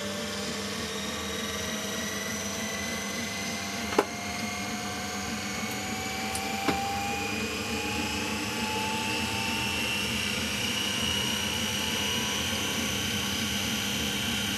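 Big 6 kW DC motor running on rectified variac power, its whine rising slowly in pitch as it picks up speed, over a steady low hum. Two sharp clicks, about four seconds in and again near seven seconds.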